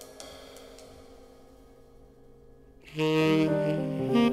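Jazz ensemble recording. Soft held tones fade away for about three seconds, then a tenor saxophone comes in loudly on a sustained note near the end.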